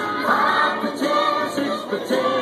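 A group of young children singing a song together in unison.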